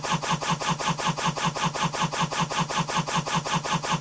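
A very short slice of a recorded song looped over and over by a DJ app's beat-loop, making an even, rapid stutter that repeats several times a second.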